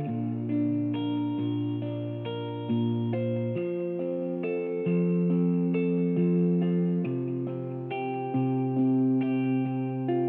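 LAVA ME 4 acoustic-electric guitar playing a slow instrumental passage: single picked notes, changing about twice a second, ring over lower notes held for a second or so.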